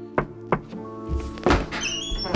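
Two quick knocks on a wooden door, then a louder thump about a second later as the door is opened, over background music.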